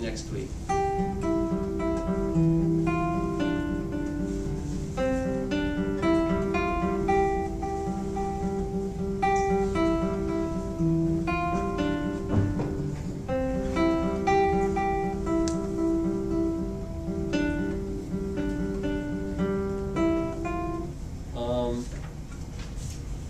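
Classical guitar played fingerstyle: a moderate-tempo melody of single plucked notes over lower bass notes, stopping about a second before the end.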